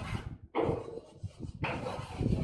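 Chalk writing on a chalkboard: two short scratchy strokes, one about half a second in and one near the end.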